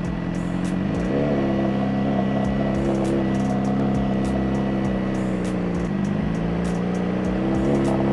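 Suzuki GSX-R sport bike's engine under way: its pitch rises about a second in as it accelerates, holds steady, dips briefly near six seconds, then rises again near the end.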